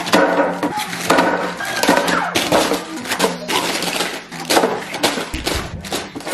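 Individually wrapped snack bars and packets in crinkly plastic wrappers dropped in handfuls into a clear plastic storage bin: a quick, dense run of crinkling, rustling and light knocks against the plastic.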